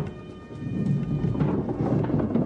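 Replica medieval thunder machine: a long wooden box tilted like a seesaw, with heavy iron balls studded with bobbles rolling along the channel inside, clattering and rumbling like thunder. The rumble dips briefly about half a second in as the box tips, then builds again.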